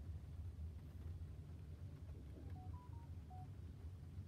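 Faint, steady low hum inside a car cabin. About two and a half seconds in, a quick run of four short electronic beeps at slightly different pitches sounds, like a phone's keypad or alert tones.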